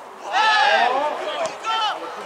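Loud, high-pitched shouting by people at a football match: a long call about a second long, then a shorter one near the end.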